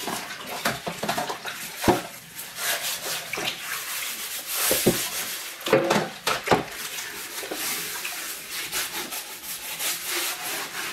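Water sloshing and splashing in a plastic basin while a sponge scrubs loosened burnt-on carbon off the outside of a metal baking tray, with several sharper splashes along the way.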